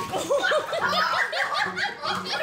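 A person laughing in a quick run of short, high-pitched bursts, about five a second.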